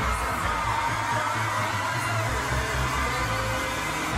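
Live pop music in an arena, a pulsing bass beat under a dense haze of crowd screaming; the beat drops out shortly before the end.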